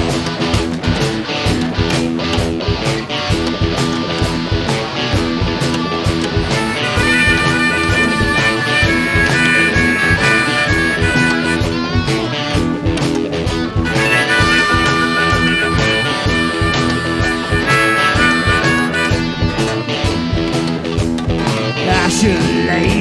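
Live blues-rock band playing an instrumental break with electric guitars, bass and drums. From about seven seconds in, a high lead melody rides on top of the band.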